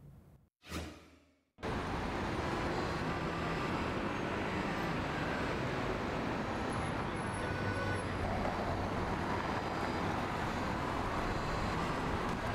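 Steady road traffic noise from cars passing on a city street. It cuts in suddenly about a second and a half in, after a brief gap.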